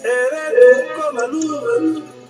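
A single voice singing a devotional hymn in long, sliding notes over soft background music; the voice comes in suddenly and breaks off after about two seconds.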